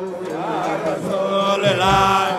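A man singing a devotional chant into a microphone, his amplified voice holding long notes that waver and slide in pitch, with other voices joining; a low thump near the end.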